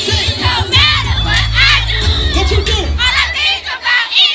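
Loud party music with a heavy bass line, and a crowd of people shouting and singing along over it. The bass drops out briefly near the end.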